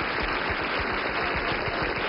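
Audience of many people applauding steadily.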